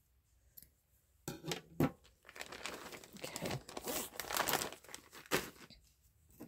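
Close crinkling and rustling of a clear plastic bag of ribbon scraps being handled, with two sharper crackles, one about two seconds in and one near the end; the first second is nearly quiet.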